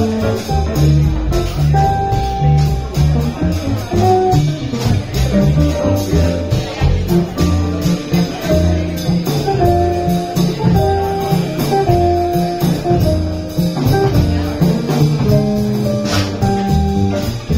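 Live jazz combo playing: an upright bass plucking a steady line of low notes about twice a second under melody notes from electric guitar and keyboard, with drums and cymbals keeping time.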